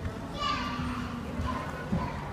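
Young children's voices in a play area, with a short high-pitched child's squeal that falls in pitch about half a second in, and a sharp knock near the end.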